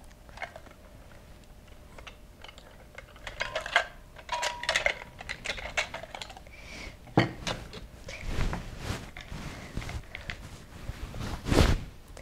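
Kitchenware being handled on a table: small clicks, taps and clinks of measuring spoons, a glass pitcher and a vanilla bottle, with a couple of brief ringing clinks a few seconds in. A louder knock comes about seven seconds in and another near the end.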